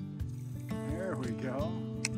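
A fishing reel being cranked, a short ratcheting whir that rises and falls in pitch through the middle, over background music with steady held notes.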